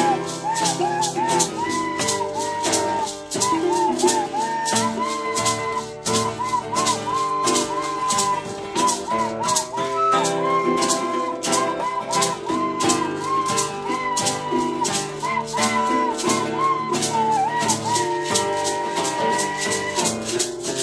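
Small acoustic band playing a folk-style tune: a recorder carries the melody while a maraca is shaken in a steady beat over strummed ukulele and guitar chords.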